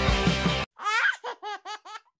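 Rock music that cuts off abruptly, followed by a baby laughing in a quick run of about five high-pitched ha's.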